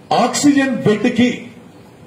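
Only speech: a man speaking into a microphone for about a second and a half, then a pause.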